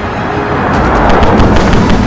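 A rushing sound effect that swells in loudness over about a second, like a vehicle speeding closer, over dramatic soundtrack music with percussion hits.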